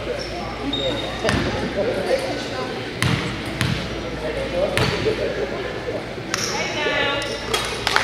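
A basketball bouncing on a hardwood gym floor, a handful of separate bounces spread over a few seconds, as a player dribbles at the free-throw line before shooting.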